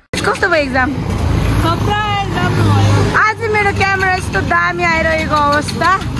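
A voice speaking throughout, in words that were not transcribed, over a steady low vehicle rumble. The sound cuts in suddenly just after the start.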